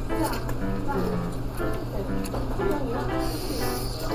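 Background music with a singing voice, at a steady level.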